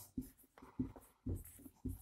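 Marker pen writing a word on a whiteboard: about four short, faint strokes.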